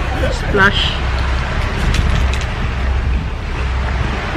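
Steady low rumble of wind buffeting the microphone, with a short vocal sound about half a second in.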